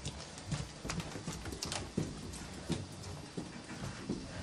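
Irregular light knocks and clicks of footsteps on a hard floor, several a second, mixed with handling bumps from a handheld camera.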